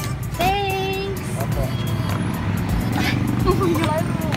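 Voices over a steady low vehicle rumble: one drawn-out vocal sound about half a second in, and more talk near the end.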